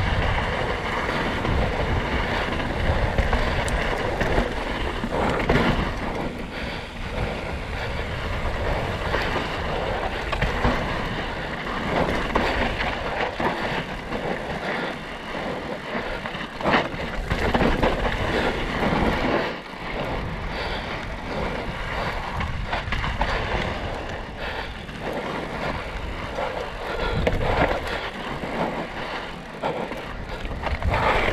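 Downhill mountain bike descending a rough, rocky dirt trail: wind rushing over the camera microphone, knobby tyres rolling over loose dirt and rock, and repeated sharp knocks and rattles as the bike hits bumps, one hard hit about two-thirds of the way through.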